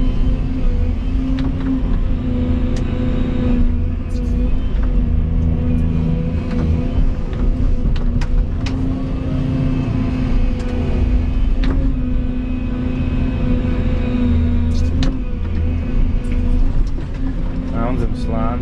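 Volvo EC220E excavator's diesel engine running steadily under working load, heard from inside the cab, with a few short knocks as the bucket works the soil.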